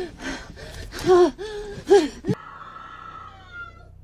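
A woman crying out and gasping in distress, several short strained cries over the first two seconds, the loudest about one and two seconds in. They cut off and a faint held tone with a low hum follows.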